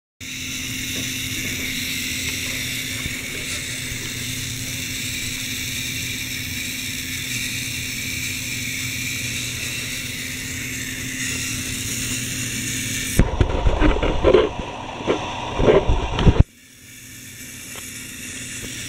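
Small electric motor of a K'nex toy truck running with a steady whine through its plastic gear train as the truck drives. About thirteen seconds in, a few seconds of loud, irregular clattering and knocks break in, after which the running sound returns, quieter.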